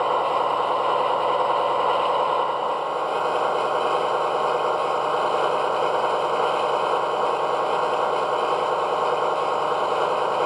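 DCC sound decoder of a Lenz O gauge DB V100 (BR 212) model diesel locomotive playing its diesel engine sound at the lowest notch as the model creeps at slow speed. The sound is steady throughout.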